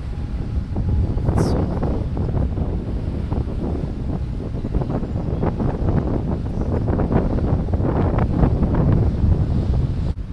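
Wind buffeting the microphone: a loud, uneven low rumble that gusts throughout, a little stronger toward the end.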